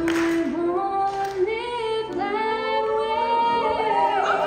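Mixed high school jazz choir singing in close harmony, sliding into a long held chord that sustains through the last couple of seconds with almost no accompaniment: the closing chord of the song.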